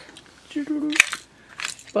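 Small plastic toy-suitcase case clicking as it is handled: one sharp click about halfway through and a lighter one near the end, as its broken lid comes away.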